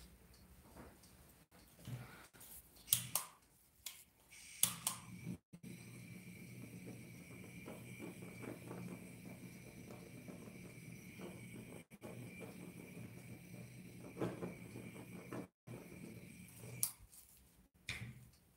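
Quiet handling of paint bottles on a work table, with a few light clicks and knocks, over a faint steady hum that starts about four seconds in.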